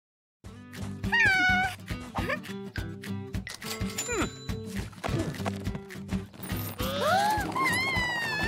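Cartoon background music with a steady bouncy beat, starting about half a second in. Squeaky wordless character vocalizations ride over it: a falling call about a second in, and sliding up-and-down calls near the end.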